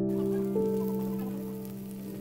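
Background piano music holding a chord that slowly fades, with a faint, even hiss underneath.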